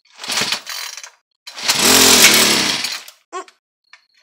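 Gas string trimmer being pull-started: a short tug on the recoil starter cord, then a longer, louder pull about a second and a half in, and a brief tug near the end.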